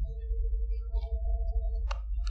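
A pause between speech with a steady low hum and two faint held tones, broken by a single sharp click shortly before the end.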